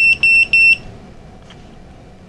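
Three short electronic beeps at one high, steady pitch in quick succession within the first second, typical of a piezo beeper. They come as the flight controller's USB link to the Betaflight configurator closes.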